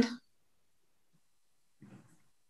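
Near silence: the audio line is cut out between speakers, after the tail of a woman's spoken question, with a faint low murmur near the end.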